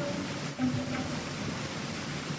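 Steady hiss of an old live-concert audience tape during a near-pause in the band's playing, with a few faint instrument notes and one short low held note about half a second in.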